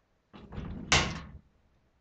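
Objects being handled: a short rustle, then one loud clunk about a second in that dies away quickly.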